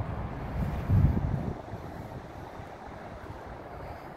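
Wind buffeting the microphone, with a stronger gust about a second in, over a steady low outdoor rumble.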